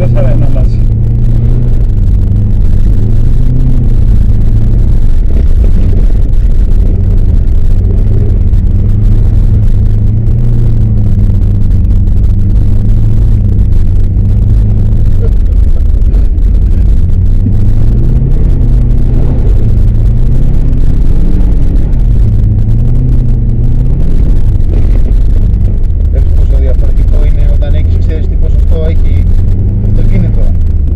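Subaru Forester 2.0XT's turbocharged 2.0-litre flat-four engine heard from inside the cabin while driving on a snowy road. Its note rises and falls with the throttle over a steady low rumble of road noise.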